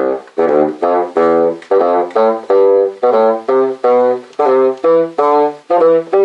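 Bassoon playing a warm-up exercise in thirds: a run of detached notes in a repeating short-short-long rhythm of dotted notes and eighth notes, stepping from note to note.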